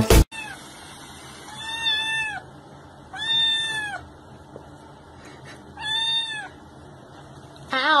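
A kitten meowing: three high, arched meows spaced a couple of seconds apart, then a louder meow that falls in pitch near the end.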